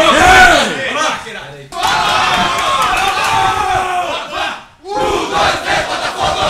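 A team of men shouting together in a tight huddle, many voices at once. The shout comes in three loud stretches broken by short pauses, about a second and a half in and near five seconds.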